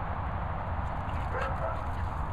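A dog gives one short, high yip that rises in pitch about a second and a half in, over a steady low rumble.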